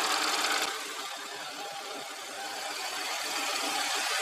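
2012 Audi A6's supercharged 3.0 TFSI V6 idling steadily, heard from above the open engine bay.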